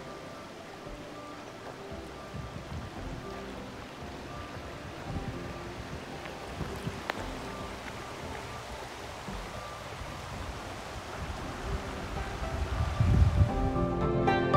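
Soft background music with held notes over the steady rush of a shallow river flowing over pebbles, with some wind rumble on the microphone. The music grows louder near the end.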